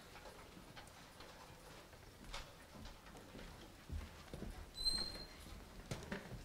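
Faint stage changeover noise: scattered footsteps, knocks and clicks as musicians move about and shift music stands and instruments, with a couple of low thumps and one short high squeak about five seconds in.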